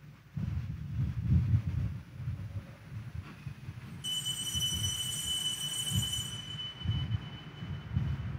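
Low, irregular rumbling with soft bumps, joined about halfway through by a steady high-pitched ringing tone that fades out near the end.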